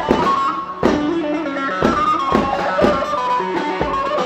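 Live dance music from an electronic keyboard and a drum kit: a fast tune with a plucked-string-like keyboard melody over regular drum strokes.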